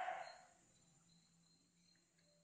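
Near silence: room tone with a faint steady low hum, after a short soft sound that fades out in the first half second.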